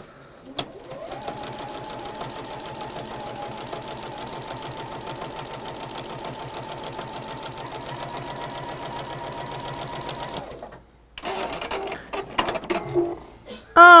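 Electric sewing machine stitching a seam across fabric strips on a patchwork square: the motor speeds up over the first moment, then runs at a steady fast stitching rhythm for about ten seconds before stopping suddenly.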